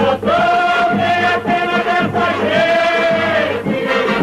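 Singing from an old film musical number: the voices hold one long note for about two seconds, then a second for about a second, over accompanying music.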